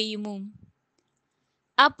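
Speech only: a voice reading scripture aloud in Telugu trails off about half a second in, then about a second of dead silence before the reading resumes near the end.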